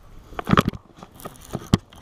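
Short knocks and rattles of a baitcasting rod and reel being handled as a bass bites. They are clustered about half a second in, with one sharp click near the end.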